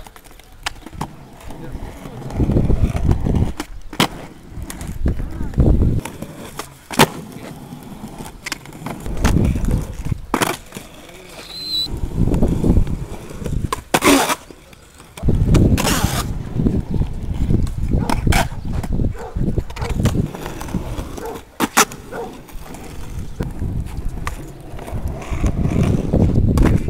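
Skateboard rolling on rough concrete, its wheels rumbling in repeated runs, with sharp clacks of the tail popping and the board landing during flatground tricks such as a kickflip and a full cab.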